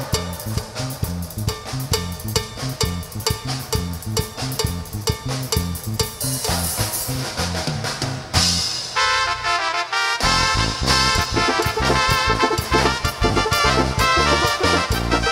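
Live tierra caliente band playing an instrumental zapateado with drum kit, bass and keyboards in a steady, danceable beat. A little past the middle the bass and drums drop out for about a second and a half, leaving the keyboard melody, then the full band comes back in.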